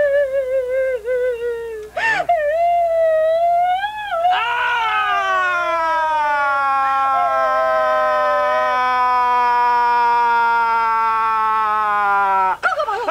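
A man wailing loudly in exaggerated crying: wavering cries at first, then one long drawn-out wail from about four seconds in that slowly sinks in pitch and breaks off near the end.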